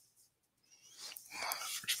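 A short pause of near silence, then a quiet voice starts about a second in and runs into ordinary speech near the end.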